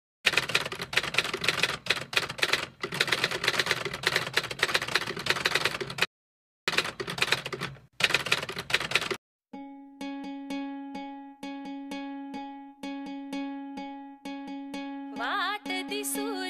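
Rapid typing clicks for about nine seconds, broken by a short silence. Then a song's intro: a plucked string instrument repeats one note in a steady rhythm, and a voice comes in near the end.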